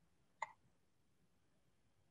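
Near silence, broken once, about half a second in, by a single short click.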